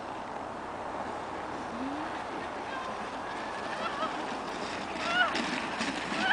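Plastic sled sliding down packed snow with a steady hiss that slowly grows louder as it comes closer. A child gives short high squeals about four and five seconds in.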